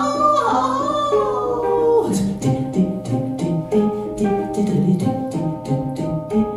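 Improvised duo of a woman's voice and a hang (handpan). The voice holds a long sliding tone, and about two seconds in it gives way to a quick, even run of short twanging notes over a steady low drone.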